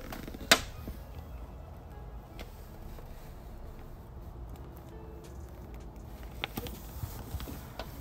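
A handbag's brass ring and hook hardware clicking once, sharply, about half a second in as the bag is handled. A few faint ticks follow over a low steady background hum.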